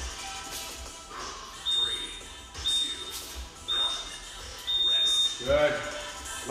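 Digital interval timer beeping its countdown: three short high beeps a second apart, then a longer beep marking the end of the round.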